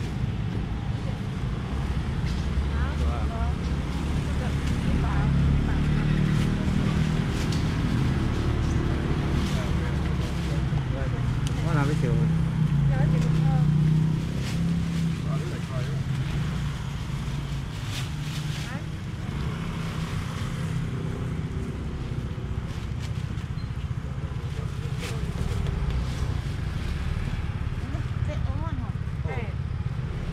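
A steady low engine rumble, growing somewhat louder in stretches, under indistinct voices talking in the background.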